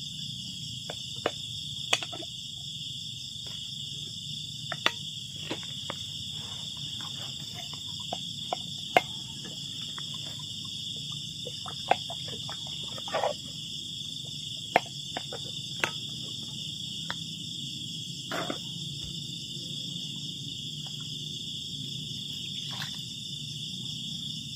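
Steady high-pitched chorus of night insects, with scattered light clicks and scrapes of a rice paddle and scoop on a cooking pot and plates as rice is served.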